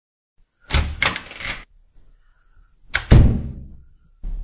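Three quick knocks about a second in, then a heavier thump a little after three seconds.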